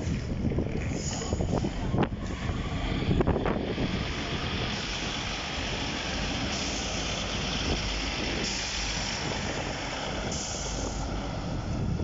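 Class 156 diesel multiple unit passing at low speed, its underfloor diesel engines running with a steady rumble. A few knocks from the wheels come in the first few seconds, then a steady hiss joins the rumble.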